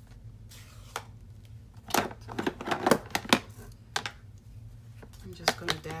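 Light plastic clicks and rattles of an ink pad case being handled and opened, with a cluster of taps around two to three seconds in and a single click near the end.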